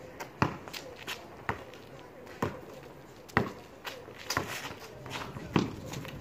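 A basketball bouncing on a concrete driveway during dribbling, with sharp, irregular bounces about once a second, and sneakers shuffling between them.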